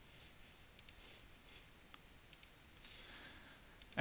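Faint computer mouse clicks, a few scattered single and double clicks.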